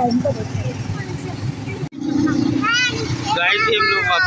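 Rickshaw ride with a steady low rumble of engine and road noise. After a brief break about two seconds in, children's high voices come in over the vehicle hum.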